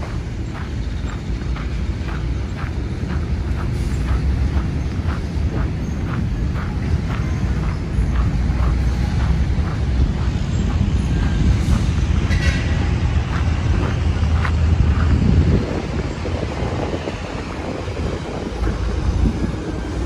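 Steady low outdoor rumble of wind on the microphone and distant traffic. Through the first half or more, footsteps on sand come about twice a second as the person filming walks.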